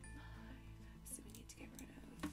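Faint whispered speech, a woman counting under her breath, over a low steady hum.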